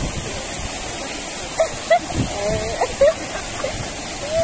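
Fountain water jets arching over a walkway and splashing down onto it: a steady rushing hiss of spray, with brief voices calling faintly around the middle.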